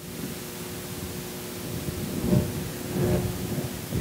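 A pause in speech: steady hiss of the room and sound system with a low rumble and a faint held tone, and faint voice sounds about two and three seconds in.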